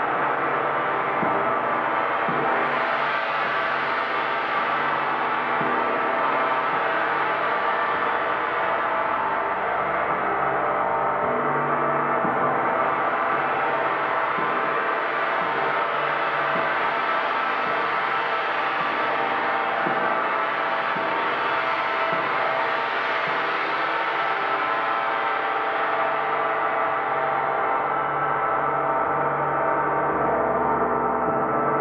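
Large hanging gong played continuously with a soft-headed mallet: repeated gentle strokes keep up a dense, shimmering wash of overlapping ringing tones at a steady level. The upper shimmer swells and eases twice.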